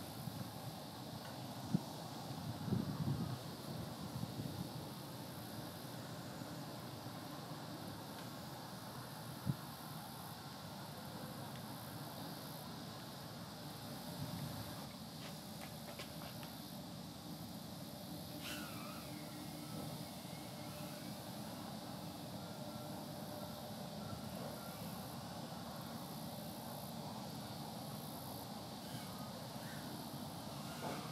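Faint, distant whine of a tiny brushless FPV racing quadcopter's motors in flight, over steady outdoor background noise. A brief falling tone comes a little past halfway, and there are two soft knocks, about two and ten seconds in.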